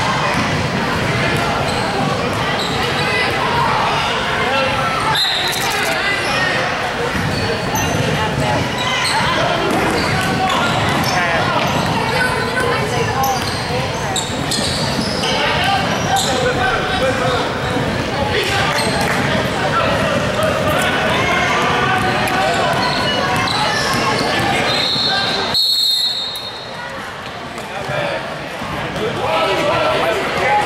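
Basketball bouncing on a hardwood gym floor during a youth game, among indistinct voices of players and spectators echoing in a large hall. A short high steady tone sounds about 26 seconds in, followed by a briefly quieter stretch.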